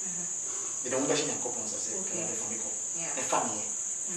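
A steady, unbroken high-pitched shrill whine or trill that runs on under a man's speech.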